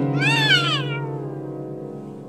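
A piano chord ringing and slowly fading, with a toddler's high, wavering squeal over it for about the first second.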